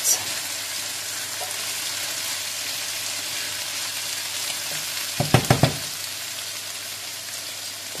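Eggplant and onion ikra sizzling in a frying pan, the sizzle slowly dying down with the stove just switched off, while a wooden spoon stirs the vegetables. A quick run of sharp clacks from the spoon against the pan, a little past the middle, is the loudest sound.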